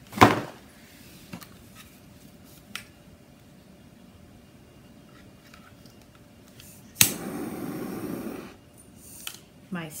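A sharp knock as a jar is set down on the table, then about seven seconds in a click followed by a steady hiss lasting about a second and a half: a handheld torch being lit.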